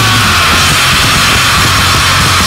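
Japanese hardcore punk recording: loud distorted guitars, bass and drums in a dense wall of sound, with one high note held through it.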